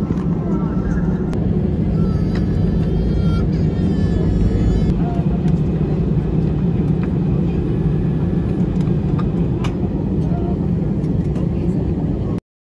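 Airliner cabin noise after landing: a steady low drone from the engines, with scattered light clicks.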